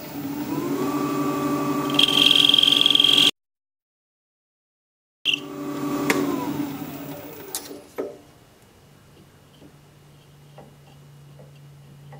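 Jet 1840 wood lathe motor spinning up with a rising whine, then running steadily while a turning tool cuts down a small tenon, with a loud high-pitched squeal for about a second. The sound cuts out abruptly for about two seconds, then returns with the lathe running and winding down with a falling whine around six seconds in. After that it is quiet apart from a low hum and a few light clicks.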